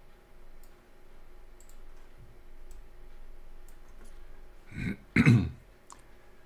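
Faint clicks about once a second in a quiet small room, then near the end a man clears his throat, loudly and briefly.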